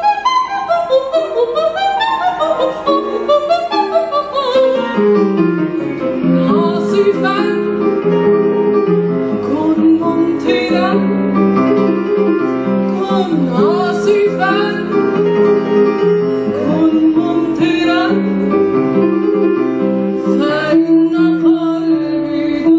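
A woman's operatic soprano voice singing an Arabic art song with piano accompaniment: quick runs of notes early on, then long held notes with vibrato.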